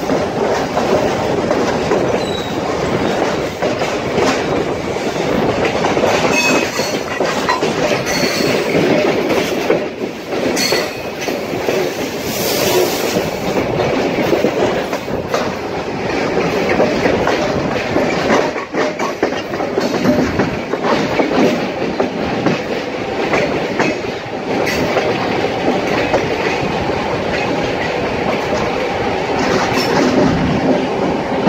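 SuperVia Série 500 electric commuter train running, heard from an open window: a steady rumble of wheels on rail with irregular clickety-clack over joints and switches and some wheel squeal.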